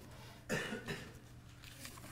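A person's short cough about half a second in, followed by a smaller second burst just after.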